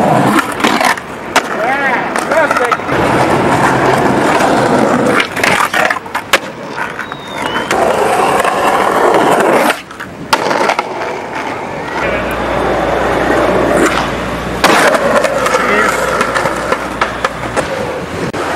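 Skateboard wheels rolling on concrete and asphalt, broken by sharp clacks of the board popping and slapping down as tricks are landed. The sound changes abruptly several times.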